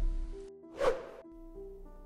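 Title-card transition sound effects: the low tail of a boom fades out, then a single short swoosh comes about a second in. Soft background music plays underneath.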